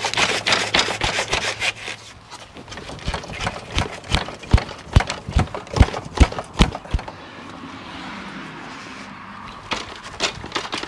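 Two e-bikes rattling and clunking on a hitch-mounted bike rack as they are shaken by hand to mimic road bumps: a fast, irregular run of sharp knocks, loudest around the middle. About seven seconds in it eases to a faint hiss, and the knocking starts again at the very end.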